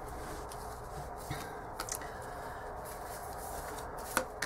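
Steady low hiss with a few soft clicks about a second and a half in, as tarot cards are handled and laid down on a cloth.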